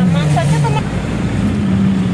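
A road vehicle's engine running while it drives, heard from inside the cabin as a steady low hum that rises a little in pitch near the end.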